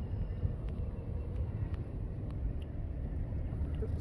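Steady low outdoor rumble of background noise, without any distinct event standing out.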